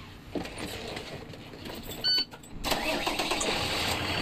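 School bus engine running, with a short beep a little after halfway. The engine sound then steps up suddenly and runs louder and steady.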